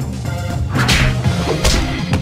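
Two quick whip-like swoosh and hit fight sound effects, the first a little under a second in and the second near the end, over loud background music.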